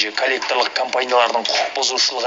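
Speech only: a news voice-over talking without a pause.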